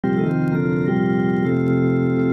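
Hammond B3 organ playing sustained chords, moving to a new chord three times before holding the last one.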